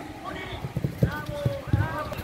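Football training on artificial turf: a ball being kicked and players' feet thudding, heard as several short dull thumps, under players calling out across the pitch.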